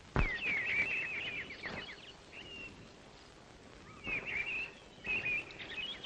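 Small birds chirping in quick runs of short, sliding notes, coming in several bursts with short gaps between, over a faint outdoor hiss.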